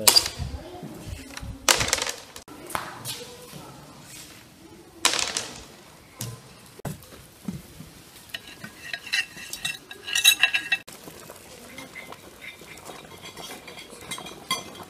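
Three loud, sharp clacks of backgammon checkers played onto a wooden board in the first five seconds. Later, from about eight to eleven seconds, a metal spoon clinks and scrapes against porcelain plates as a white topping is spread on them.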